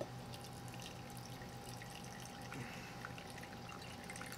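Faint, steady trickle of fire cider pouring in a thin stream through cheesecloth in a funnel into a glass mason jar, with a few small drips.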